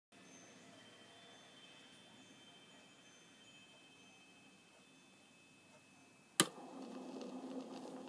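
Faint steady hiss of a 1966 demo acetate disc's lead-in groove playing back. About six and a half seconds in there is one sharp click, followed by faint sustained tones as the recording's music begins.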